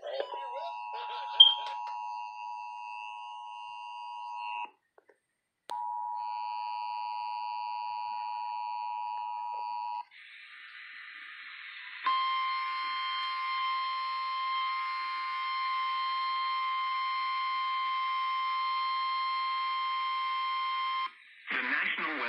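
Emergency Alert System attention tone from a portable radio's speaker: a steady two-note alert tone, broken by about a second of silence around five seconds in, then resumes. After a short stretch of hiss, a second, richer steady tone runs for about nine seconds and stops just before the warning is read.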